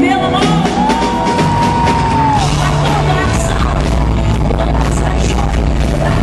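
Live rock band playing loud, with drums and cymbals, bass and guitars under a singing voice. About a second in, one long high note is held for about a second and a half and ends with a falling bend.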